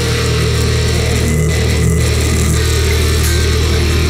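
Metal band playing live: heavily distorted electric guitar and electric bass holding a low, steady riff over drums.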